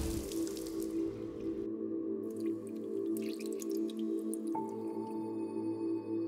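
Water dripping and splashing in a shower over a sustained ambient music drone of layered, singing-bowl-like tones. The drips thin out partway through, and a higher held tone joins the drone about four and a half seconds in.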